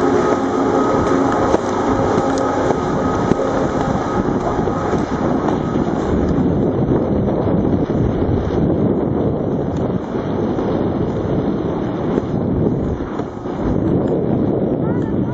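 Wind rushing over the microphone and skis hissing over packed snow during a fast downhill ski run: a loud, steady rush with no letup.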